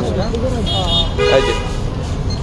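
A person's voice, with a brief steady horn-like tone a little past the middle, over a constant low rumble.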